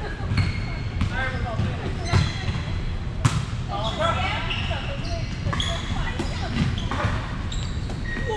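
A volleyball rally on a hardwood gym court: sharp smacks of hands on the ball about once a second, the loudest a little past three seconds in. Sneakers squeak on the floor between hits, and players call out, all echoing in the large hall.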